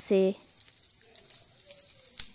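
Faint sizzling of hot oil in a frying pan as chopped green chillies go in, a low steady hiss with a few small ticks. A voice finishes a word at the very start.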